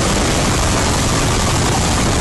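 A man screaming, so heavily distorted and clipped that it comes out as a loud, steady wall of noise.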